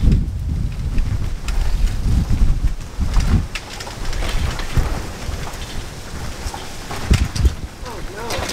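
Wind buffeting the microphone of a camera carried on a moving bicycle, in uneven low rumbling gusts, with scattered small clicks and rattles.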